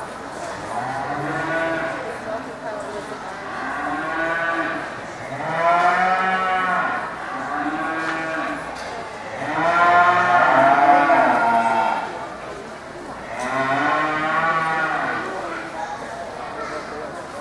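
Show cattle mooing, several calls one after another every couple of seconds; the longest and loudest call comes about two-thirds of the way through.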